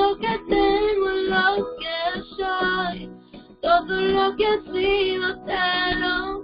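Spanish worship song: a high voice singing held, sliding notes over guitar accompaniment, with a short pause in the voice about halfway through.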